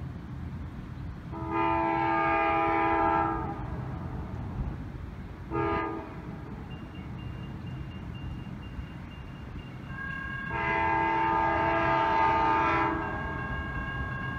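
Amtrak GE P42DC diesel locomotive's multi-chime air horn as the train approaches: a long blast, a short toot, then a second long blast.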